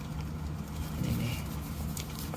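Steady low hum of a stationary double-decker coach idling, heard from inside the cabin.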